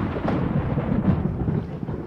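Thunder rumbling, a recorded sound effect.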